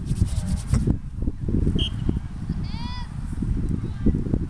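Wind buffeting the phone's microphone, a dense low rumble. A distant voice calls out once about three seconds in, and a brief high tone sounds just before it.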